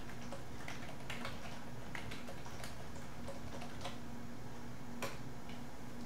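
Computer keyboard typing: irregular key clicks a few per second, with one sharper keystroke about five seconds in, over a steady low hum.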